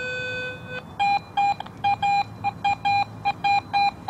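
Garrett AT Pro metal detector's audio: a steady, lower-pitched tone that stops just under a second in, then a rapid string of short, higher-pitched beeps, about four a second, as the search coil sweeps back and forth over a target. The high beeps are the response to a quarter that reads around 85 and stands out among the iron trash signals around it.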